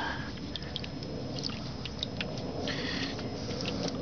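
Hand stirring shallow water in an aluminium cookie tin: soft sloshing with many small light clicks as the fingers move across the tin's bottom, and a brief brighter swish in the last second or so.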